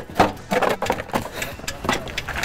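Plastic wheel-well liner being pulled and flexed out of a car's wheel arch: a series of sharp cracks and clicks with rustling scrapes between them.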